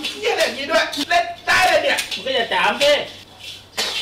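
People talking, with a few sharp clicks among the words; the talk dies down near the end.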